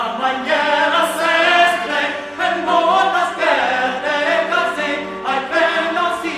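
Several voices singing a medieval troubadour sirventes in Occitan, in a slow chant-like line over a steady low drone.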